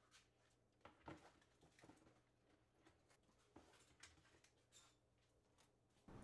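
Near silence with a few faint light knocks, about six in all and the clearest a little after one second in: potted plants being set down on plastic shelf trays.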